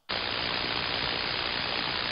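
Steady receiver static hiss from an ANAN software-defined transceiver listening on the 11-metre band in lower sideband. It cuts in abruptly and has no treble above a sharp ceiling.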